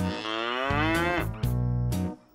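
A cartoon cow moos once, a long call that rises and then falls over about a second, over background music.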